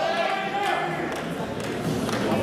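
Indistinct voices talking or calling out, with no clear words.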